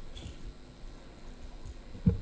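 Quiet room tone in a meeting room, a low hum with a few faint clicks and rustles.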